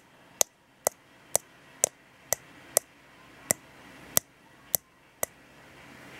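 Ten sharp clicks of light taps on a small plastic vial, about two a second with a couple of slightly longer gaps, as a tarantula sling is tapped out of it into its new container.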